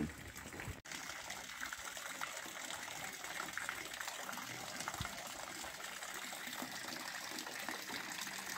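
Steady rush of running water, with a brief dropout just under a second in.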